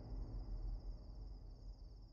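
Crickets chirping in a steady pulsing trill, over a low rumble that fades away.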